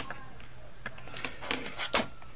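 A few light plastic clicks and taps as a Logitech K750 solar keyboard is handled and stood upright, most of them in the second half.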